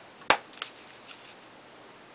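Clear acrylic stamp block knocking down onto a paper tag on a tabletop: one sharp tap about a third of a second in, then a couple of lighter clicks as it is handled and pressed.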